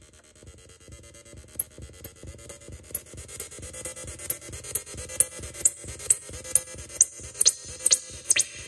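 Arturia MicroBrute analog synthesizer playing a repeating electronic techno pattern while its knobs are twisted. It starts quiet. From about a second and a half in, a sharp, high, falling sweep repeats about twice a second over a low pulse, growing louder as the sound is tweaked.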